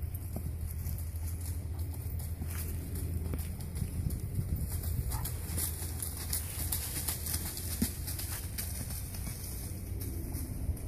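A horse trotting on sandy, leaf-covered ground: soft, irregular hoofbeats and rustling. A steady low rumble of wind runs underneath.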